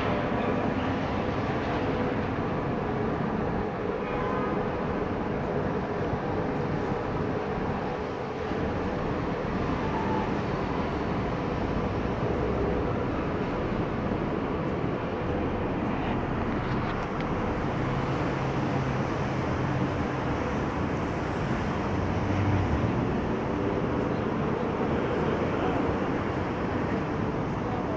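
Steady city street noise: a continuous rumble of traffic and building machinery with a faint steady hum through it.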